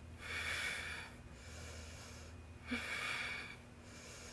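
A woman breathing audibly and slowly while holding a plank: two long breaths, each about a second, the second one starting nearly three seconds after the first.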